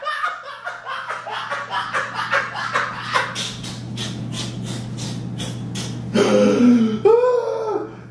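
A man laughing hard: a run of short, breathy belly-laugh bursts, then a louder voiced outburst about six seconds in.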